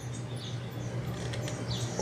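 Quiet workshop background with a steady low hum. A few faint, short, high chirps and light metallic ticks come from an open-end wrench working the rocker-arm adjusting nut on an overhead-valve small engine that is not running.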